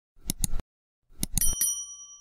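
Subscribe-button animation sound effect: two quick mouse clicks, then about a second later a few more clicks and a bright bell ding that rings on for nearly a second.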